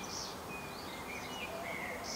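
Outdoor ambience: several short, high bird chirps scattered over a steady low background noise.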